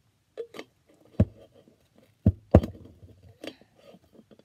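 A glass mason drinking jar and its screw lid being handled and fitted together: a few sharp knocks and clinks, the loudest two close together about two and a half seconds in, with light handling noise between.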